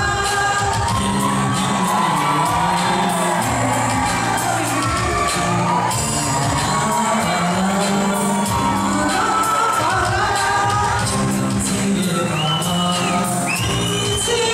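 Tibetan pop song played live by a band: male voices singing over electric guitar, keyboard, bass and drums, with shouts and whoops from the audience.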